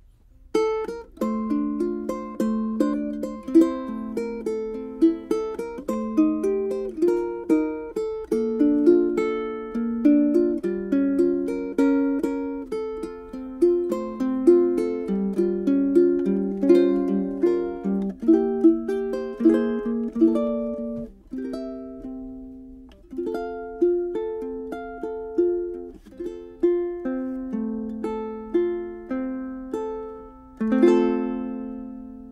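Ukulele with a bone saddle played fingerstyle: a melody of plucked notes over chords, each note ringing and decaying. The playing eases off briefly about twenty-one seconds in, then carries on.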